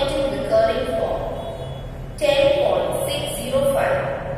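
A person speaking, in talk broken by short pauses.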